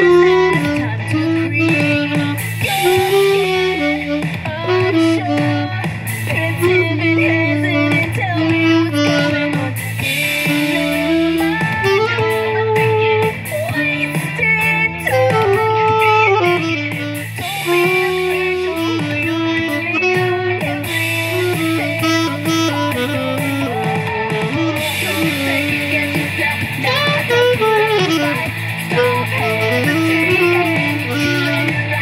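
A saxophone playing a stepwise melody over a recorded backing song with guitar and a steady repeating bass line.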